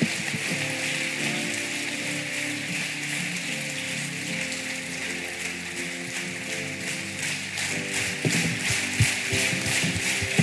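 A large crowd applauding, a dense patter of many hands, over music playing held chords. Toward the end a few louder, sharper claps stand out.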